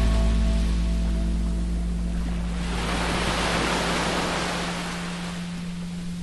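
Surf washing up a sandy beach: one wave swells to a rush about halfway through, then fades. Underneath runs a steady low 174 Hz hum, and the last notes of a music track die away at the start.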